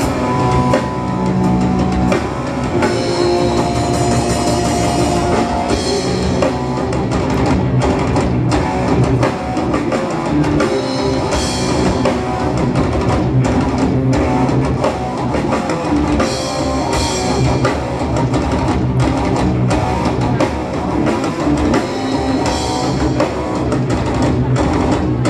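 Death metal band playing live and loud: a drum kit hit in a fast, dense rhythm under distorted electric guitars.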